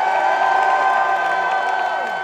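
Concert crowd cheering and screaming, a dense held roar of many voices.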